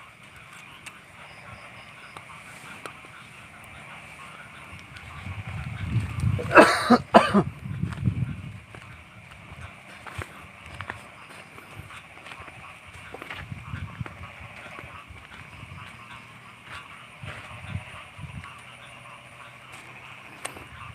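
Night forest ambience: a steady high-pitched insect drone throughout. Rustling and footfalls through undergrowth grow louder for a few seconds about five seconds in, with a brief loud voice-like call at about seven seconds.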